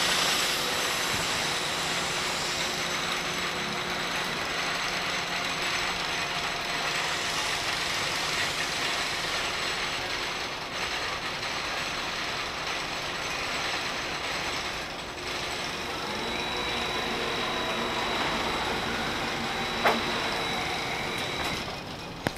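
Flying-swing amusement ride machinery running with a steady mechanical rattle and whir. A thin high whine joins about two-thirds of the way through, and there is one sharp click near the end.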